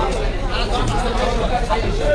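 Chatter of people talking, with a couple of faint knocks.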